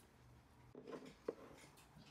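Near silence, with a faint stir just under a second in and one short light clink a little later: a metal spoon against a stainless steel bowl as thick sauce is spooned in.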